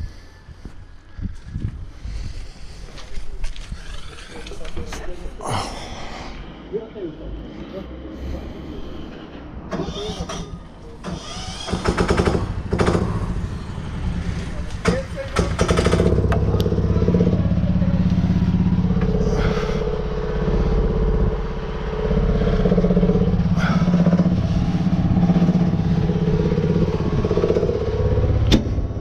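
Knocks and handling clatter around a backhoe loader, then about twelve seconds in an engine starts and from about sixteen seconds runs steadily at a constant speed.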